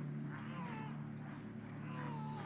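Faint soundtrack of a dramatic film scene: a low steady drone, with thin wavering high cries drifting over it about half a second in and again near the end.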